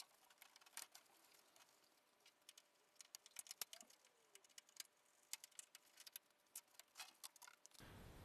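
Near silence, with faint scattered clicks and ticks, a little thicker in the second half, and one faint short squeak near the middle.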